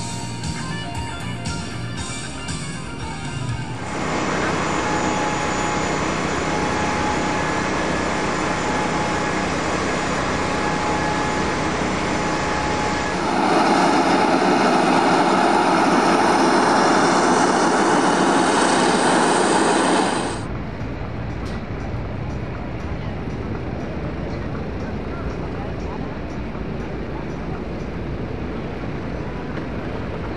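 Airshow sound across several cuts. It starts with music, then jet aircraft engines give a steady rush with a thin whine, growing louder for a stretch in the middle and dropping back to a quieter noisy bed near the end, with voices mixed in.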